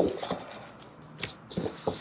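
Gloved hands kneading and folding a stiff semolina bread dough on a stainless steel worktop: a few short soft rubbing and pressing sounds, spaced out over about a second.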